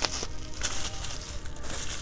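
Plastic bubble wrap crinkling faintly as it is handled and snipped open with scissors, with a few small ticks.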